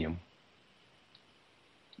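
A voice trailing off, then near silence with two faint, short clicks: one a little after a second in, one just before the end.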